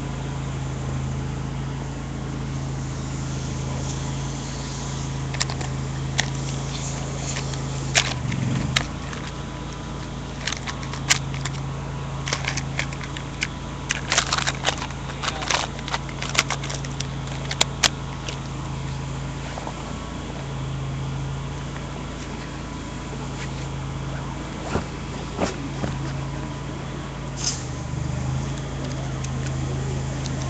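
An engine running steadily, a low even hum, with scattered sharp clicks and knocks through the middle stretch.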